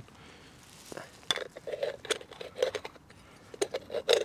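Bialetti moka pot's upper chamber being set on its filled base and screwed down: a run of small metal clinks and scrapes that begins about a second in.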